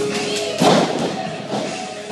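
A wrestler's body landing on the wrestling ring's canvas with one loud thud about half a second in, over music playing in the hall.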